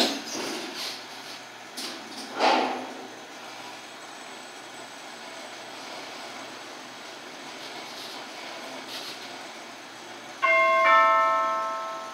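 Passenger elevator doors knocking shut in the first few seconds, then the car running down with a steady low hum. About ten seconds in, a two-tone electronic arrival chime rings and fades as the car reaches the floor.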